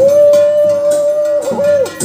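A single long held note, nearly a pure tone, steady at one pitch for almost two seconds, wavering twice briefly near the end before it stops, over faint ceremonial percussion.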